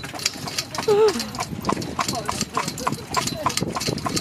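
Hooves of a horse pulling a carriage, clip-clopping steadily, with a brief voice about a second in.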